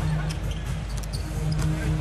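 A basketball dribbled on a hardwood arena court, a few short bounces over the steady murmur of the arena crowd and low background music.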